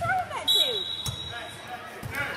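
A referee's whistle is blown once: a steady shrill tone about a second long, starting about half a second in. Basketball bounces and the voices of players and spectators are heard around it.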